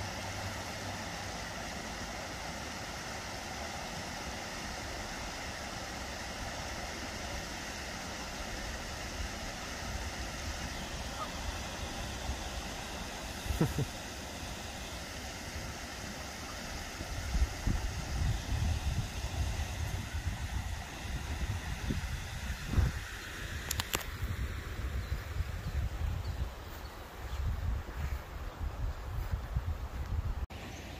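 Shallow river water running steadily over rocks, a constant rushing hiss. About halfway through, irregular low rumbles and bumps from wind or handling on the microphone start up over it.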